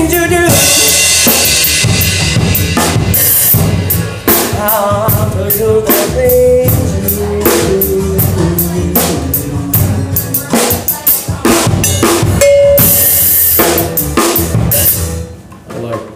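Live soul-funk band playing an instrumental passage led by a drum kit, with dense snare, kick and cymbal strokes over a bass line. The music winds down and stops about a second before the end.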